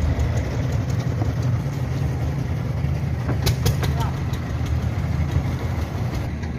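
Boat engine idling with a steady low rumble, with a few sharp knocks about halfway through.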